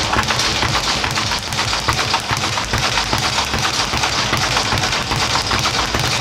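Leather speed bag punched in a fast, steady rhythm, rattling against its round rebound platform with many hits a second.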